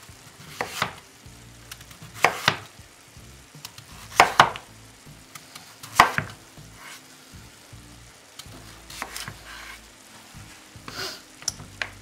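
A kitchen knife slicing through a raw sweet potato and striking down onto a wooden cutting board, one sharp knock for each slab, with the loudest about every two seconds in the first half and fainter ones later. Meat frying in a pan sizzles faintly underneath.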